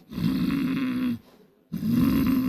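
A man imitating loud snoring into a microphone: one long snore lasting about a second, then a short pause and a second snore starting near the end.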